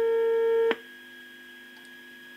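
Vegaty ST.4 signal tracer's loudspeaker giving a steady tone: the signal picked up by its probe on the grid of a radio's tube. It cuts off with a click under a second in as the probe comes off the pin, leaving a faint steady hum.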